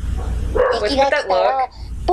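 A young boy's high-pitched voice speaking Japanese in a lively, sing-song way: an anime child character's line.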